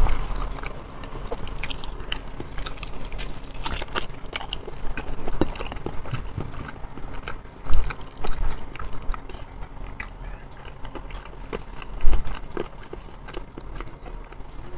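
Close-miked chewing and biting of a man eating baked potato and fried chicken, with many small wet clicks and crackles. Two louder knocks come about 8 s and 12 s in.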